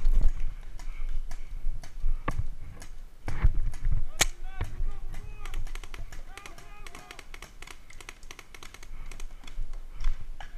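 Paintball markers firing across the field: many rapid, irregular sharp pops, with one louder crack about four seconds in. Distant players shout in the middle of the stretch.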